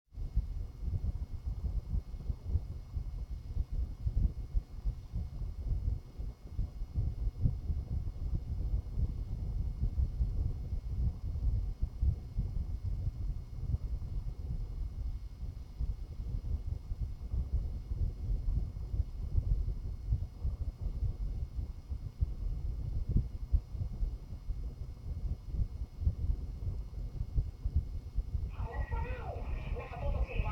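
An uneven low rumble on the microphone with a faint steady high whine. Near the end, audio from a TV news broadcast starts playing through a phone's small speaker.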